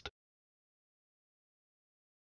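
Silence: the soundtrack is empty after the tail of the AED's voice prompt ends just at the start.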